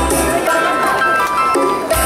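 Live band music over a concert PA, a ballad with acoustic guitar. The deep bass drops out for most of the stretch and comes back near the end.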